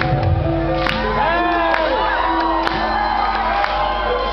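Live rock band playing the opening of a song, with long steady held notes, while the audience shouts and cheers over the music.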